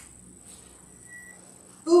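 A quiet pause in a room, with only a faint steady hiss, a soft click at the start and a brief faint high tone about a second in; then a woman starts speaking near the end.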